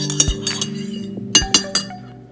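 Metal teaspoon clinking against the sides of a ceramic mug while stirring coffee: a handful of sharp clinks, several close together in the second half. Background music plays under it and fades out near the end.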